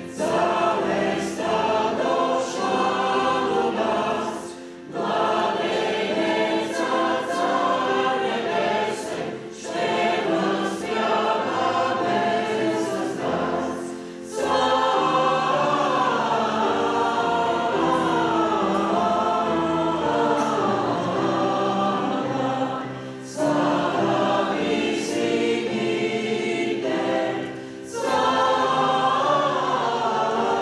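A church choir singing, in phrases broken by brief pauses.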